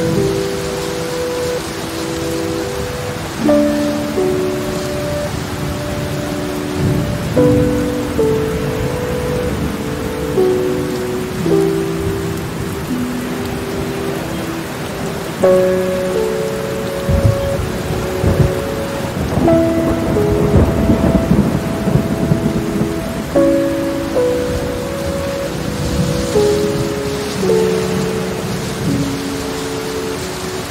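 Steady heavy rain with low rumbles of thunder, strongest a little past the middle, under soft music of sustained chords that change about every four seconds.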